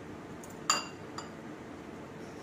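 Metal kitchen tongs clinking once against a glass bowl of beaten egg, a sharp ringing clink, followed by a lighter tap about half a second later.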